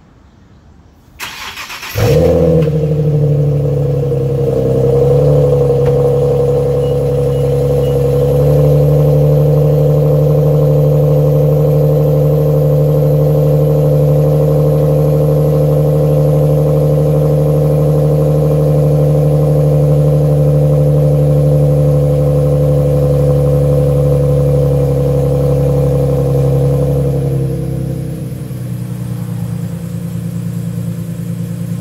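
Infiniti G37 sedan's V6 cold-started through a loud exhaust: a brief crank about a second in, catching at about two seconds, then a steady high cold-start idle that steps down to a lower, quieter idle near the end.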